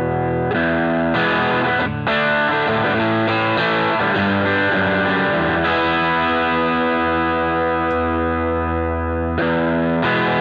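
Telecaster electric guitar played through a Vox tube combo amp with a DCW Exoplex preamp/boost pedal on its "Flat" setting: chords and short phrases, one chord left ringing from about six seconds in. Near the end it breaks off sharply into a new passage.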